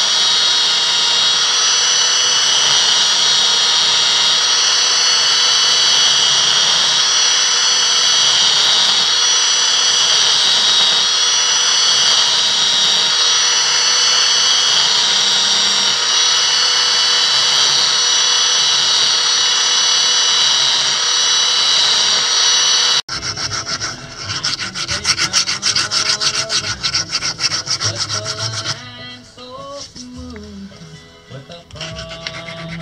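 Parkside belt sander running steadily with strong high whining tones, an acacia wood knife handle pressed against the moving belt. About 23 seconds in, it cuts off and is followed by quick rhythmic rasping strokes of hand filing, which grow quieter near the end.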